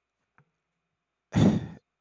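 A man sighs once into a close-held microphone about a second and a half in, a short breathy burst after a stretch of near silence with one faint mouth click.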